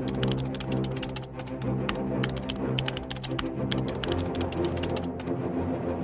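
Typewriter sound effect: rapid, irregular key clacks as text is typed onto the screen, over background music with sustained low notes. The clicks stop about a second before the end while the music carries on.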